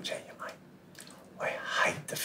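A man's voice speaking in two short bursts, one at the start and a louder one near the end, with a quieter pause between.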